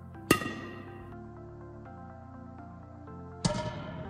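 Two sharp strikes of a badminton racket hitting a shuttlecock on the serve, the first about a quarter second in and the loudest, the second near the end, each with a short ringing tail over steady background music.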